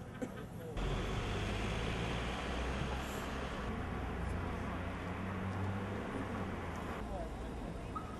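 Steady street noise with the low rumble of a running vehicle, starting abruptly about a second in and cutting off about a second before the end.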